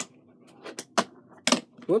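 A fingerboard popped for an ollie onto a stack of three plastic disc cases: a quick series of sharp clicks and clacks as the tail snaps on the table and the board and wheels knock against the cases, about five or six knocks in all. The attempt is missed ("whoops").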